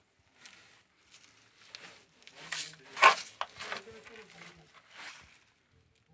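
Irregular rustling and scraping noises, loudest about three seconds in, with a low voice faintly in the background.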